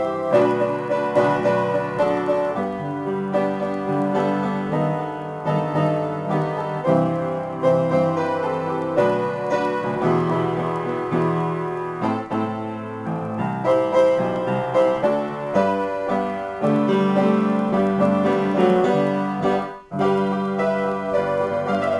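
Solo piano improvisation, played continuously with chords and a moving melody. There is a brief break near the end.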